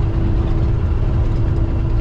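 Steady low rumble of a semi-truck's engine and road noise heard inside the cab while cruising at highway speed, with a faint steady hum above it.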